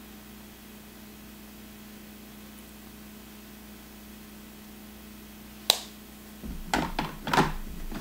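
A steady low electrical hum, then one sharp click about three-quarters of the way in. A few soft knocks and rustles of makeup being handled follow.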